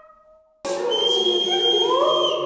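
A held tone fades out, then after a sudden cut a group of voices sings sustained notes: a high, steady held tone over lower voices that glide upward near the end.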